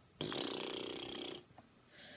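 A rattly, snore-like breath or throat noise from a person, lasting about a second.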